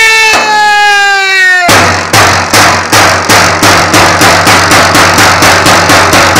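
A village crier's long drawn-out shouted call, slowly falling in pitch, ends about a second and a half in. It is followed by a steady, rapid beat on his hand-held drum, struck with a stick: the drum-beat that goes with a village proclamation.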